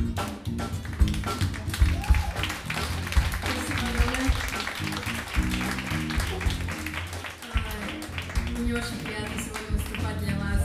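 A live jazz band playing, with a bass line and drum kit carrying the music and a noisy wash over it in the middle.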